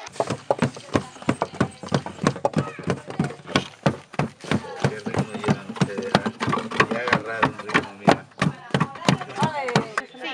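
Wooden hand rammer tamping moist earth inside timber formwork for a rammed-earth (tapial) wall: a quick, irregular run of strikes, about four a second.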